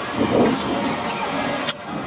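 Steady outdoor field noise at a football pitch, an even rushing haze on the microphone, with one sharp click about three-quarters of the way in, after which the noise briefly drops.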